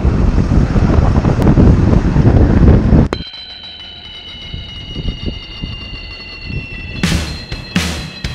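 Combine harvester working through standing corn, heard loud and close from a camera on the corn head, with wind on the microphone. About three seconds in it cuts off suddenly to music with held high tones, and a beat comes in near the end.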